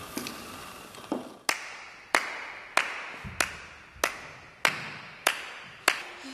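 A steady beat of sharp clicks, about one and a half a second, starting about a second and a half in and keeping time for an a cappella song.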